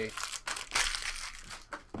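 Crinkling and rustling of foil and plastic trading-card pack packaging being handled, a dense crackle that is strongest in the middle and fades out near the end.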